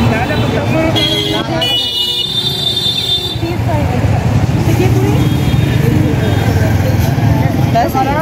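Busy street-market din: people talking over road traffic, with vehicle horns honking, one held blast about two seconds in.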